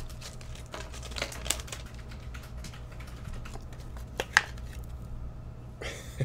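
A baseball card and clear plastic card sleeves handled on a desk mat, a card slid into the plastic holder: light crinkling with scattered small clicks and one sharper click about four and a half seconds in, over a steady low hum.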